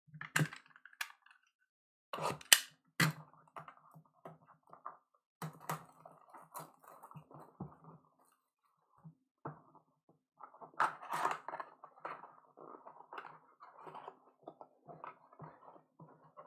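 Plastic shrink wrap being torn off a trading-card box and crumpled: irregular crackling and rustling with a few sharp cracks. Near the end, the cardboard box flaps are opened.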